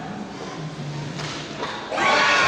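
Ice hockey play on a rink: skates scraping on the ice and stick-and-puck knocks. Shouting and cheering break out right at the end as a goal goes in.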